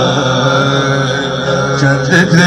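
Male naat reciter singing unaccompanied through a microphone and PA, holding one long low note after sliding down into it.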